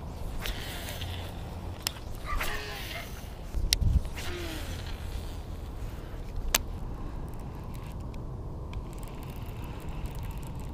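Handling noise of a baitcasting rod and reel being cast and wound in: a steady low rumble with clothing rustle, a few sharp clicks and a dull thump about four seconds in.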